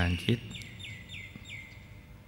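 A small bird chirping: four short calls, each sliding down in pitch, about three a second.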